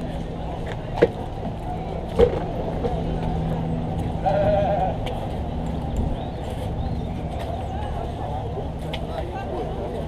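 Steady low hum of street background, broken by two sharp knocks about one and two seconds in and a short voice-like call just after four seconds.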